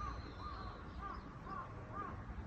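Crow cawing in a quick series of short calls, about two a second, over a low steady rumble.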